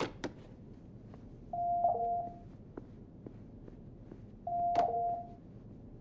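Deep Space Nine station door chime sounding twice, about three seconds apart, each a short steady electronic two-note tone signalling someone at the door. A couple of sharp clicks at the very start.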